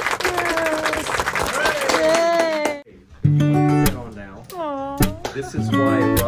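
People clapping and exclaiming, with quick sharp claps and excited voices. A short lull comes just under three seconds in, then plucked-string music with strummed notes takes over.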